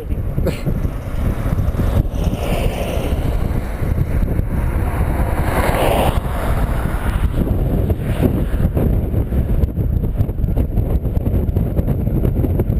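Wind buffeting the camera's microphone in a steady low rumble, with a louder swell of broader noise around the middle.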